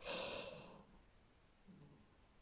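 A woman's short sigh, a soft breath out that fades away within about the first second.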